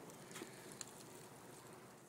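Near silence: faint outdoor background hiss with a couple of faint light ticks about half a second and a second in.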